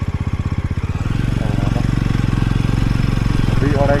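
Jawa 42's single-cylinder engine running under way, a rapid even pulsing that quickens and grows louder about a second in as the revs rise.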